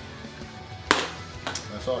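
Handling a plastic flip-top spice jar: one sharp click about a second in, then a lighter click shortly after.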